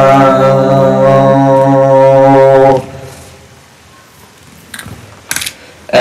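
Unaccompanied singing voice holding one long, steady low note that stops abruptly about three seconds in. After a quiet stretch, a couple of short faint sounds come near the end.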